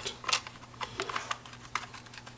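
Several short, sharp clicks and taps from a small wooden-cased remote with 3D-printed push buttons being handled in the hands, the sharpest about a third of a second in.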